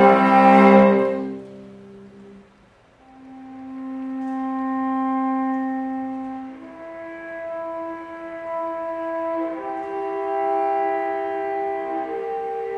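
Solo cello played with a curved bow. A loud sustained passage dies away about two seconds in. After a brief pause come soft, long held notes: first one note for about three seconds, then more held notes.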